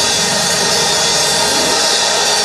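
Congregation's praise break: a loud, steady wash of clapping and shouting mixed with a church band's drums and cymbals.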